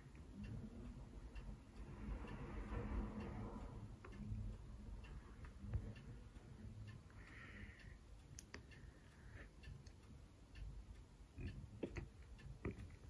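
Faint, quiet room with scattered light, irregular clicks and soft rustles of a hand holding a smartphone.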